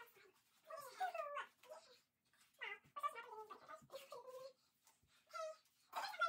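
Sped-up, high-pitched human voices chattering in short bursts: speech from a fast-forwarded recording, pitched up to a squeaky, cat-like sound.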